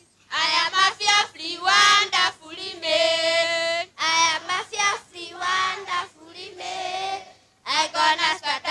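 Children singing a song in short sung phrases with brief breaks between them.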